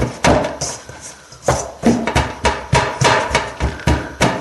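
Hands pressing and punching pizza dough flat in a metal bowl set in a stainless steel sink: a run of dull knocks, about three a second, with a short pause about a second in.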